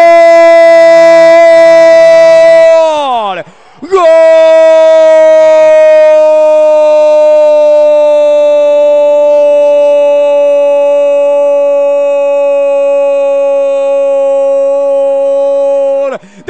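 A radio football narrator's long, loud goal cry, "goool", held on one high note. About three seconds in his voice falls away and breaks for a breath, then he takes up the cry again and holds it for about twelve seconds, sinking slightly in pitch. It is the cry that marks a goal being scored.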